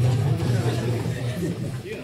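A low sustained note from the band's stage sound fades out over about a second and a half, with people talking over it.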